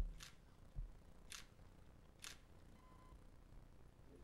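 Three faint camera shutter clicks about a second apart as photos are taken, with a low thump at the very start.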